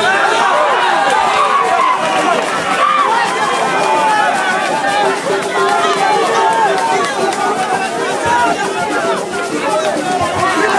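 Boxing crowd ringside, many voices shouting and talking over one another without a break.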